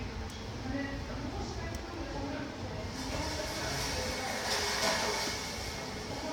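Indistinct voices talking in the background of a room, with a broad hiss-like noise building in the second half, loudest about five seconds in.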